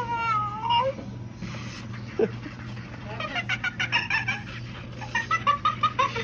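Animatronic toy chimpanzee head making chimp sounds through its speaker: a wavering pitched call at the start, then quick runs of short hooting, laughing calls in the second half. A steady low hum runs underneath.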